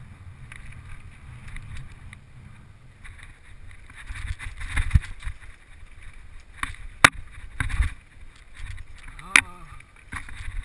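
Mountain bike riding rough dirt singletrack, with wind rumble on the bike-mounted camera's microphone and the bike rattling over bumps. A sharp clack about seven seconds in, the loudest sound, and another near the end.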